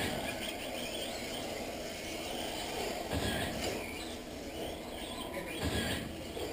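Radio-controlled off-road race cars running on a clay track: a steady mechanical racing noise, with low thumps about three seconds in and again near the end.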